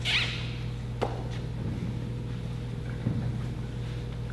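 Quiet room tone in a large hall with a steady low hum, a brief squeak just after the start and a single sharp click about a second in.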